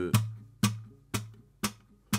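Acoustic guitar played fingerstyle on an A minor chord shape, capo at the second fret: the thumb on the A string and the fingers on the treble strings plucked together, alternating with percussive slaps of the fingers back onto the strings. Four strokes, about two a second, the plucked ones ringing and the slaps short and clicky.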